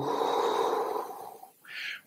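A person breathing out slowly and audibly through the mouth into a close microphone for a little over a second, the exhale of a deep-breathing exercise, then a short breath in near the end.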